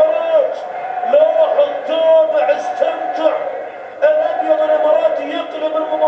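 Football commentator's voice in Arabic over the television broadcast, speaking in long, drawn-out calls as the attack builds.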